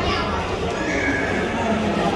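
People talking indistinctly, with a held high-pitched call about a second in.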